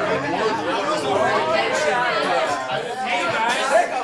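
Several people talking over one another: overlapping conversational chatter with no single clear voice.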